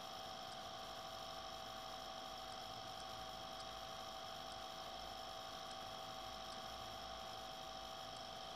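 Steady electrical hum and hiss with a few faint, constant high whining tones.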